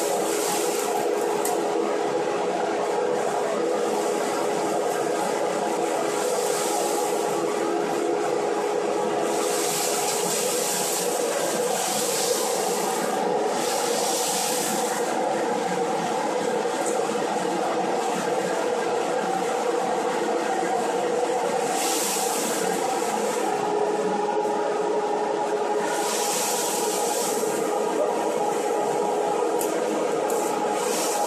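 Electric centrifugal blower running steadily with a constant hum, blowing shredded polystyrene foam beads through a flexible hose. A high hiss swells and fades several times over the drone.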